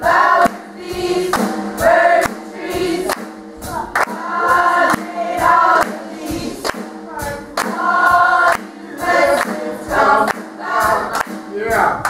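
Youth gospel choir singing in full voice over steady held accompaniment notes, with sharp rhythmic beats running through the singing.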